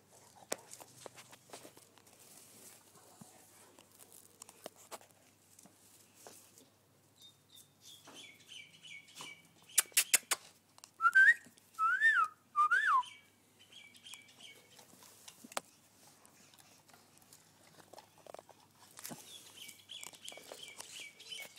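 Birds chirping faintly in the background. A few sharp clicks come just before the middle, followed by three loud whistles, each rising and then falling in pitch, about a second apart.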